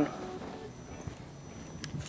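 Faint handling of a small plastic bag filled with disinfectant gel, as fingers pinch and squeeze it, over quiet studio room tone, with one light click near the end.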